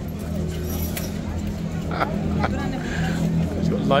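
Bystanders' voices and chatter over a steady low engine hum from traffic, with a few short clicks around the middle.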